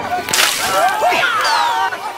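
A sharp whip-like swish about a third of a second in, then a splash as a person falls into water, with falling whistle-like tones near the end.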